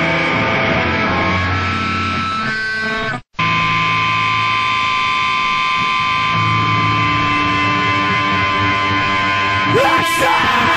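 Hardcore punk recording: distorted electric guitar holds heavy chords, drops out to silence for a moment about three seconds in, then rings on a single held chord with a steady high tone over it. A yelled vocal comes in right at the end.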